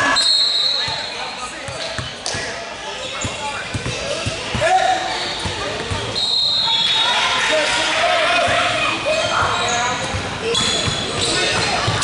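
Youth basketball game sounds in a large gym: a basketball bouncing on the hardwood floor under players' and spectators' voices, with two short shrill high tones, one at the start and one about six seconds in.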